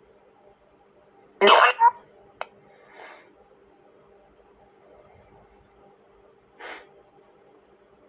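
Faint steady electronic hum from a ghost-box app playing through a small speaker. About a second and a half in, a short loud voice-like burst cuts through it, followed by a sharp click and two brief breathy hisses.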